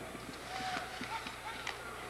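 Hockey arena during play: a low murmur of the crowd, with scattered sharp clicks and scrapes of sticks, puck and skates on the ice.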